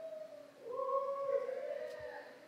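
Long, drawn-out whoops from one or two people, held steady in pitch for about two seconds and overlapping, in a large gymnasium.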